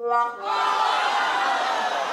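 A brief steady buzzer-like tone, then a studio audience reacting with a collective groan that slowly falls and fades.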